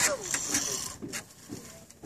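Handling noise from harness gear and clothing as a small child is lifted up: a sharp click at the start, then a few softer clicks and rustling that die away.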